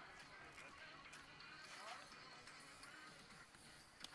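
Near silence: faint outdoor ambience, with a brief faint voice about two seconds in.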